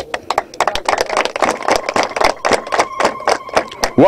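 An audience applauding: many hands clapping in a dense, irregular patter that starts suddenly.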